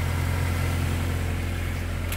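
Volkswagen Golf 8 R's turbocharged 2.0-litre four-cylinder engine idling, a steady low hum.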